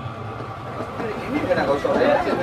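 Background chatter of spectators' voices at a football pitch, growing louder from about a second in.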